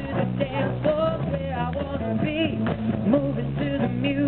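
A live rock band playing: electric guitars over drums, with a melodic line weaving over a steady low end.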